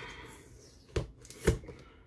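Hands handling a plastic toy playset and its packaging: a short rustle, then two sharp plastic clicks about half a second apart, the second louder.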